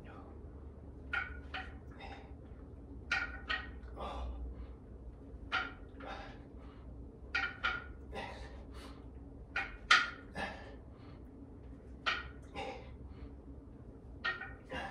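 A man's short, forceful breaths, mostly in pairs about every two seconds, in time with the reps of single-arm dumbbell rows; the strongest comes about ten seconds in. A steady low hum runs underneath.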